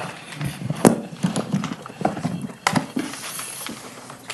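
Irregular knocks and rustles of large paper drawings being handled and shuffled close to a microphone, with a sharper knock about a second in and another near the end.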